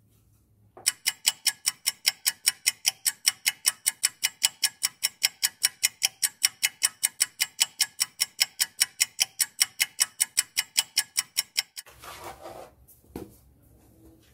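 Ticking clock sound effect: fast, evenly spaced ticks, about five a second, starting about a second in and cutting off suddenly near twelve seconds, added over sped-up footage. After it, faint rustling and a light knock of white board pieces being handled on a plastic sheet.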